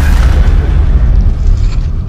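Cinematic boom sound effect from a video intro: one hit at the start, then a loud, low rumble that carries on.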